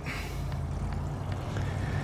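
Steady low rumble of an engine running, without speech.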